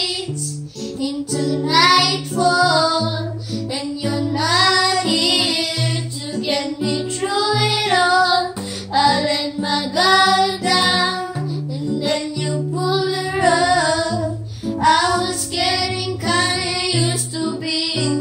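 A young girl singing the melody over an acoustic guitar played alongside her, the guitar's bass notes changing every second or so.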